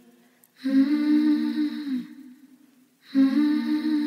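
A singer humming without words, two long held notes with a short pause between them, in a quiet acoustic pop song.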